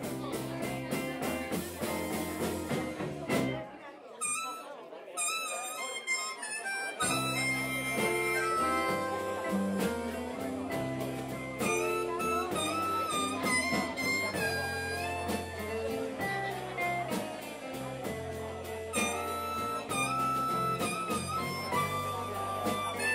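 A live blues band of electric guitar, bass and drums, with a harmonica cupped against the vocal microphone playing lead over it. About three and a half seconds in, the bass and drums drop out for a break, and the full band comes back in about seven seconds in.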